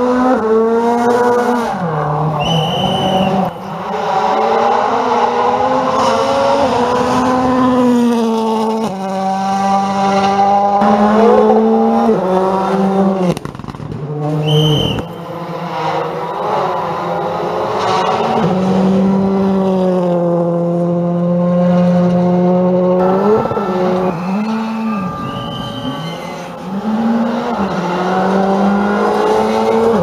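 Rally cars at full speed on a gravel stage, their turbocharged engines rising and falling in pitch through repeated gear changes and throttle lifts. A few short high whistles cut in now and then.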